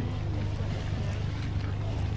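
Outboard motor of an inflatable boat running steadily with a low hum, over a faint hiss of wind and water.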